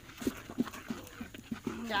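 A spoon knocking and scraping in a bowl while a thick batter is stirred: a string of short, irregular knocks, about seven in under two seconds. A woman starts speaking near the end.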